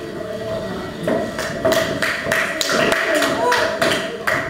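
Dancers' shoes tapping and stamping on a wooden hall floor, a quick run of sharp taps and thumps that starts about a second in, with voices and faint dance music underneath.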